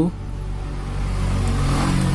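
A road vehicle's engine, a low hum under a hiss that grows louder toward the end.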